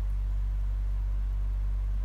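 A steady low hum, unchanging throughout, with no other distinct sound.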